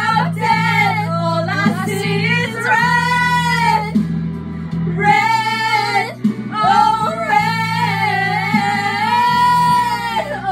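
Women singing along to a pop song over its backing track, with long held notes about three, five and eight seconds in over a steady bass line.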